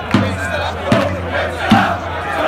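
Football supporters' crowd chanting together to a steady drum beat, about one stroke every 0.8 seconds.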